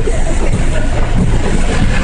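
Steady rumble and hiss of a car idling at a drive-thru window, heard through a phone's microphone.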